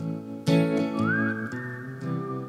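Acoustic guitar being strummed while a man whistles a melody over it; a strong strum comes about half a second in, and the whistle then slides up and holds a higher note.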